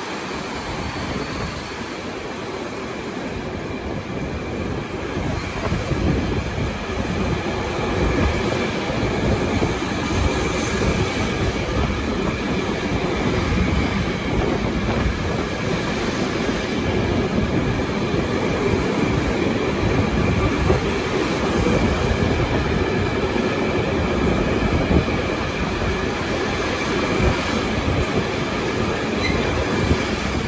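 A freight train of empty timber stake wagons rolls past close by, a steady rumble and clatter of wheels on rail that grows a little louder after a few seconds, with a faint steady squeal above it.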